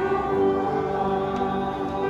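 A hymn with keyboard accompaniment: sustained chords with voices singing along.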